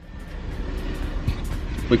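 Road traffic noise, a steady low rumble that fades in quickly after a cut, with a few soft thumps partway through; a man starts speaking right at the end.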